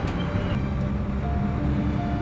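Steady low drone of a bus's engine and road rumble heard from inside the cabin. Held background music notes come in about halfway through.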